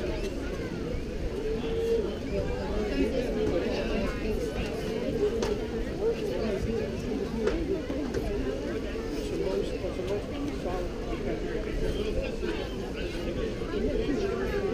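Spectators and players talking at once around a baseball field: an unbroken babble of indistinct voices.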